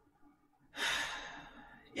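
A woman's audible breath, about a second long, drawn in the middle of a sentence while she is choked up and close to tears.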